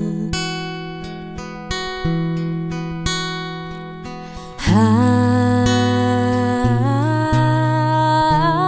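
Acoustic guitar cover music. A fingerpicked acoustic guitar plays alone for the first four and a half seconds, then a woman's wordless, hummed vocal line comes in over it with long held, gliding notes.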